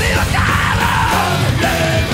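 Progressive thrash metal: a loud, fast full band of distorted guitars, bass and drums with a shouted vocal over it.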